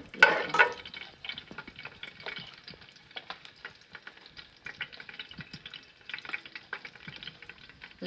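Garlic frying in hot ghee with mustard and nigella seeds crackling, and a steel ladle stirring and scraping in an aluminium pot. The loudest crackling comes just after the start, then settles into scattered small crackles and scrapes.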